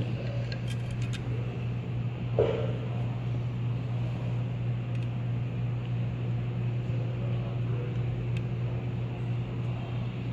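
A steady low hum, like a fan or machine running, with a few faint light ticks as a small hex key works the cross pin into the piston rifle's gas block. There is one brief, louder knock about two and a half seconds in.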